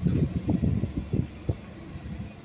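Loud, irregular low buffeting on the microphone for the first second and a half, with a couple of short knocks, the kind of rumble that wind or handling makes on a moving handheld camera.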